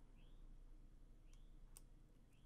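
Near silence: quiet room tone with two faint clicks about a second and a half in, and a faint short chirp repeating about once a second.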